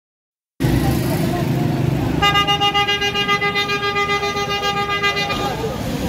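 A vehicle horn held on one steady note for about three seconds, starting about two seconds in, over street noise.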